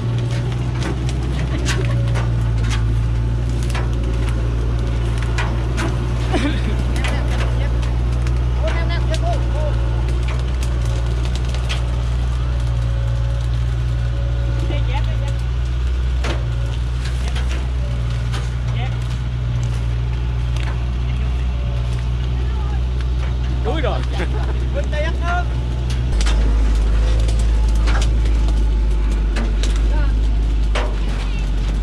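Dongfeng truck's diesel engine idling steadily, its note dropping lower and growing louder about 26 seconds in. Scattered knocks of wood on wood sound over it.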